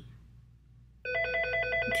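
Electronic telephone ringing, a rapid trilling ring of several steady tones that starts about halfway through.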